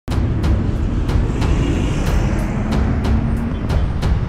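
Road traffic noise with cars and a bus passing, mixed with a music track whose beat strikes steadily about three times a second.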